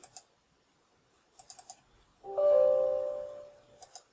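A few quick clicks on the laptop, then a Windows system chime of several steady tones that rings out and fades over about a second and a half as a User Account Control prompt appears. Two more clicks follow near the end.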